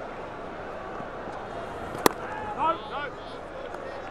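Steady murmur of a cricket stadium crowd heard through a live broadcast feed, with a single sharp crack about two seconds in as the bat meets the ball.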